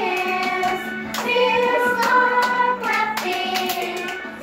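A small group of children singing a song together, clapping their hands at points along with it.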